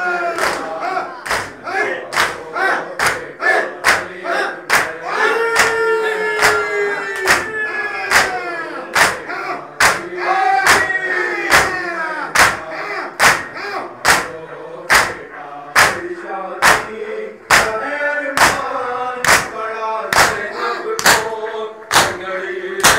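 Men chanting a noha (Shia mourning lament) together over a microphone, while a crowd of mourners performs matam, striking their chests in unison. The slaps make a steady, loud beat of one to two strikes a second under the chant.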